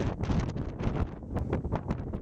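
Strong wind buffeting the microphone: a heavy low rumble that rises and falls in irregular gusts, with a crackling edge.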